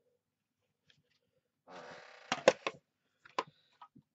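A plastic paper trimmer (guillotine) is slid across a cutting mat and set down: a short scrape, then a few sharp clacks and knocks.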